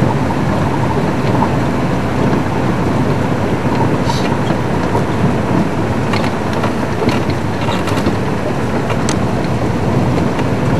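Open safari game-drive vehicle running, its engine rumble mixed with wind buffeting the microphone in a loud, steady roar, with a few faint ticks and rattles.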